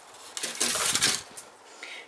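Thin plastic seedling punnet crinkling as it is squeezed and a wet root ball is pulled out of it: one rustle lasting about a second.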